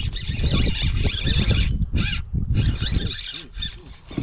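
Spinning reel cranked in bursts, its gears whirring, as a small hooked bass is reeled in, with laughter over it at the start.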